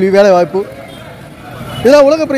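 A man's voice, a drawn-out word in the first half-second and more speech starting near the end, over the steady noise of a busy street with traffic.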